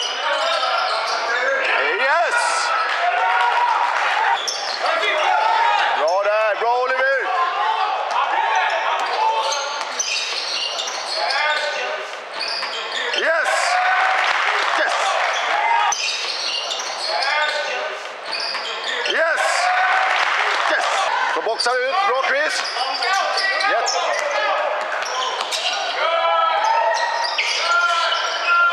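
Basketball game play on a hardwood court: a ball dribbling, sneakers squeaking in short chirps, and players and spectators shouting, echoing in a large sports hall. A wash of cheering rises around the middle.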